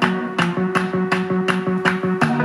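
A pop song with a steady beat, about three beats a second, playing from a Google Home smart speaker in the room.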